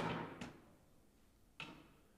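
Three sharp thuds with a short hall echo: balls hitting the hardwood floor of an indoor gym. The loudest comes right at the start, a softer one about half a second later, and another near the end.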